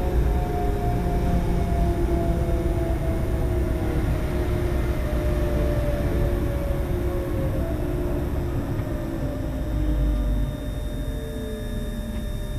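Electric train running through a station, heard from the cab: a steady rumble of wheels on track with a motor whine that falls slowly in pitch, and the whole sound drops a little in level near the end.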